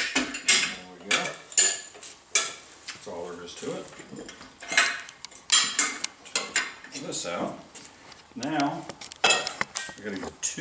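Metal tire-mounting tools clanking and scraping against a steel spoked motorcycle wheel rim as a tire is levered onto it: a loud clank at the start, then a string of irregular metallic knocks and scrapes, some ringing briefly.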